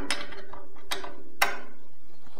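A few small clicks and knocks of a Kreg bandsaw rip fence being nudged into line on the saw table by hand, the sharpest about a second and a half in.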